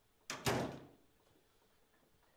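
A door shutting once, a single heavy thud about a third of a second in that dies away within about half a second.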